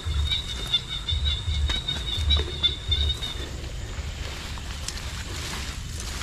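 A night insect trilling steadily with a high, finely pulsing note that stops a little past halfway. Under it are rustling, handling thumps and a few clicks from hands working inside a mesh fish trap and then pushing through swamp grass.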